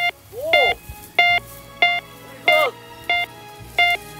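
Metal detector giving repeated sharp electronic beeps, about one and a half a second, as its coil sweeps back and forth over a target, with a few lower, rising-and-falling tones among the beeps.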